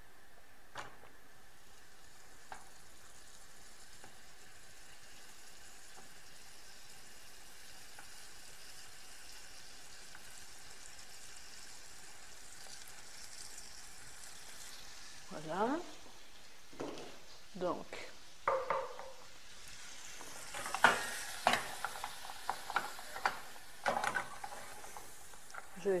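Faint steady hiss for the first half, then a knife and a wooden spoon knocking and scraping against a metal saucepan as butter is cut into the pan and stirred into the chocolate to melt. The knocks come thick and sharp in the last few seconds.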